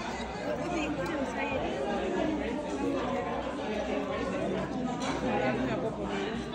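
Chatter of several people talking at once, overlapping voices with no single clear speaker.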